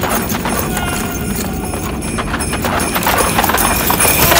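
Hoofbeats sound effect for Santa's galloping reindeer: a steady run of quick clip-clop hoof strikes.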